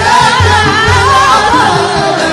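A woman singing an Arabic song in wavering, ornamented melodic lines over a band with a steady low beat.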